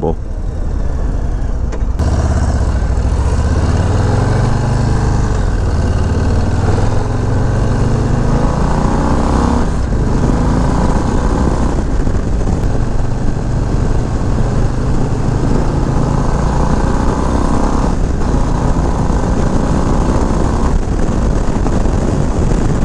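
Brand-new 2024 Harley-Davidson Low Rider ST's stock-exhaust Milwaukee-Eight 117 V-twin accelerating hard up through the gears, heard from the rider's seat. The engine pitch climbs, falls back at each of several upshifts and climbs again, under steady wind rush on the microphone.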